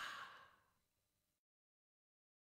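The tail of a breathy sigh, fading out within the first half second, then near silence.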